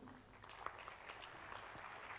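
Faint, scattered audience applause in a concert hall, heard as a soft haze with a few small claps.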